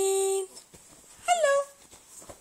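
Baby cooing: a long held coo that stops about half a second in, then a short coo that falls in pitch about a second and a half in.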